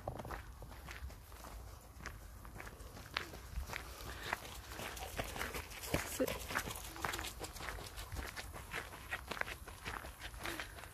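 Footsteps on a paved path, with irregular light steps throughout; a dog and a runner pass by partway through.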